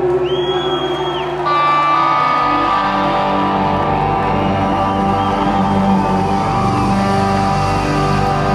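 Live rock band with electric guitars, keys and bass playing. A high held note sounds for about the first second, then about a second and a half in the band comes in louder with long sustained chords.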